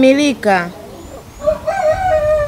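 A rooster crowing, starting about a second and a half in and ending on one long, level note.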